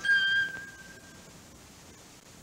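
The last note of a commercial jingle: a high, clear held tone that fades out within about a second, leaving only faint tape hiss.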